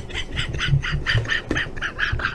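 A man laughing hard in fast, wheezy, breathy bursts, about six a second.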